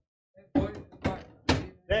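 Voices talking close to the microphone, with a sharp knock about one and a half seconds in.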